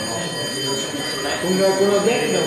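Indistinct talk from several people in a large council chamber, no single clear speaker, growing louder in the second half. A steady high-pitched electronic whine runs underneath.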